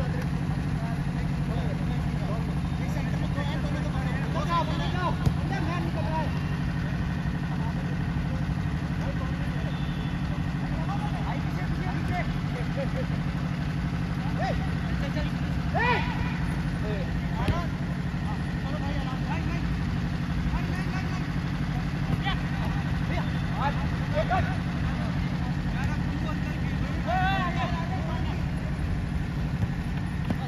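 Outdoor football-game ambience: scattered distant shouts from players over a steady low rumble, with a few sharp thumps of the ball being kicked, the clearest about five seconds in.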